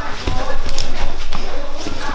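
Grapplers' bodies and limbs thudding and scuffing on foam mats during no-gi sparring, with irregular knocks and voice-like breathing or grunting sounds over them.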